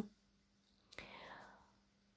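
Near silence in a pause between read-aloud phrases, with a soft click just before a second in and a brief, faint whisper from the reader.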